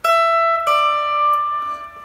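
Electric guitar playing two single notes, the second a little lower, each left to ring. These are notes of the minor pentatonic extension box around the tenth and twelfth frets.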